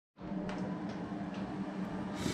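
Steady low hum of workshop background noise, cutting in a moment after dead silence, with a few faint light clicks.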